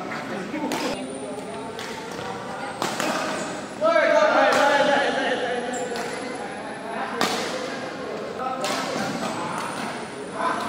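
Badminton rackets striking a shuttlecock in a rally, several sharp hits a second or two apart, echoing in a large sports hall. A player's loud shout comes about four seconds in, with other voices around the hits.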